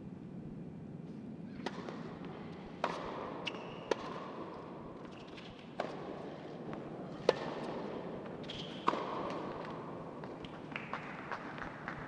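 A tennis serve and rally on an indoor hard court: sharp pocks of the ball off the rackets and bounces off the court, a hit about every one to one and a half seconds, each with a short echo, over a low steady room hum.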